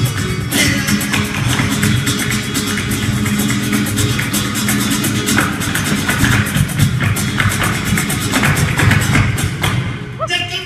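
Live flamenco performance: acoustic flamenco guitars playing with a fast, dense run of sharp percussive strikes throughout, at a steady loud level.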